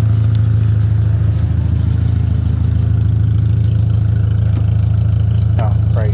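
Volkswagen Beetle engine idling steadily, kept running with the battery disconnected: a sign that the alternator is charging.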